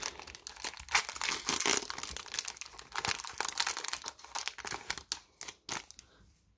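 Foil Magic: The Gathering booster pack wrapper crinkling and tearing as it is worked open by hand, a dense run of irregular crackles that stops shortly before the end.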